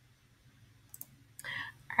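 Quiet room tone broken by a few faint sharp clicks about a second in, followed by a soft breathy sound just before speech resumes.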